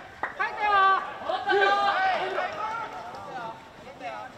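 Players' voices shouting calls across a field hockey pitch during play, high-pitched and raised, with a sharp click or two near the start.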